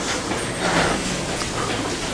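A congregation sitting back down after standing: a steady mass of shuffling, rustling and chair noise across the room.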